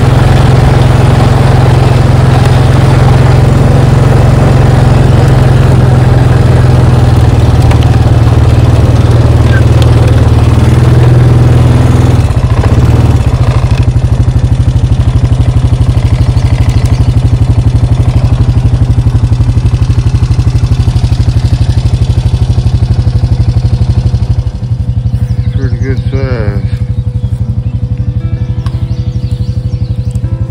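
Engine of a small off-road vehicle running close to the microphone while it is driven, steady and loud. About twelve seconds in it slows to a lower, pulsing idle, and it drops somewhat quieter about halfway through the second half. A brief higher wavering sound comes shortly after that drop.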